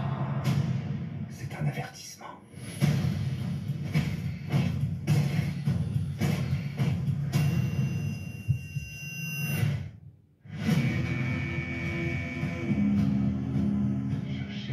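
Film trailer soundtrack: dramatic music with heavy percussive hits and a strong bass, with voices mixed in. It drops out abruptly for a moment just after ten seconds, then comes back in.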